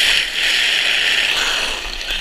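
Sled sliding fast over icy, crusted snow: a loud, steady scraping hiss that eases off near the end.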